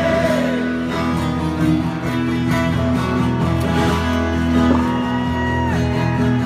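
Live rock band playing through the PA, led by strummed acoustic guitars holding steady chords during an instrumental stretch between sung lines. The sound is loud and steady.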